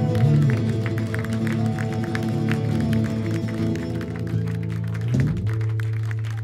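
A live rock band (acoustic guitar, electric bass, keyboard and drum kit) holding out its final chord with cymbals and drum hits at the end of a song. About five seconds in the chord drops away, leaving a low steady tone.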